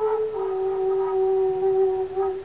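Background flute music: a slow melody steps down just after the start onto one long held note.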